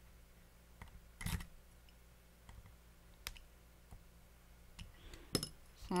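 A few scattered small clicks and taps, the strongest about a second in, as a small flathead screwdriver tightens the brass top post screws on a rebuildable dripping atomizer's deck.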